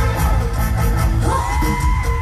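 Loud live mor lam band music over the stage speakers, with a heavy bass beat. About halfway through, a singer's voice rises into one long held note.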